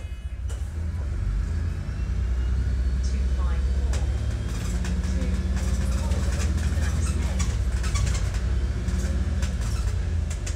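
DAF DB250 double-decker bus heard from the upper deck: a steady deep diesel rumble that grows louder about two seconds in, with frequent clicks and rattles from the cabin in the second half.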